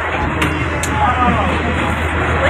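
Steady low rumble of a passenger train carriage in motion, with voices talking over it.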